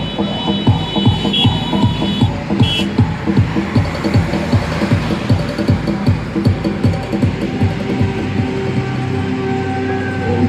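Loud music over a sound system, with a steady heavy bass beat; the beat grows fainter near the end as a steadier held tone comes in.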